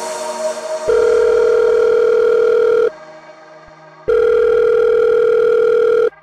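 A fading musical tail, then two long steady electronic tones of about two seconds each, about a second apart, each starting and stopping abruptly.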